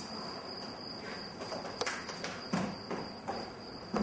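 Footsteps on a stage floor and steps: a few sharp knocks from about two seconds in. A steady thin high-pitched tone runs underneath.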